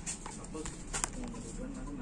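A few short crinkles and clicks of a clear plastic-wrapped box being handled, the sharpest about a second in, with faint voices talking in the background.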